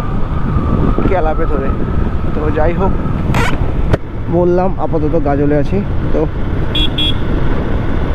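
Motorcycle riding along a highway at about 50 km/h: steady engine, road and wind noise on the rider's camera microphone, with muffled talk over it.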